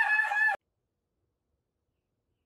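A man's high-pitched, drawn-out yell, held on one pitch and cut off abruptly about half a second in, followed by dead silence.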